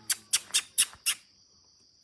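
A quick series of five sharp chirping clicks, about four a second, lasting about a second. A steady high-pitched drone runs underneath.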